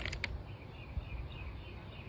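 A few quick crinkles of a plastic retail bag being handled right at the start, then faint outdoor background with faint chirping.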